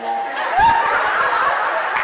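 Laughter starting about half a second in, among a man's speech amplified through a microphone.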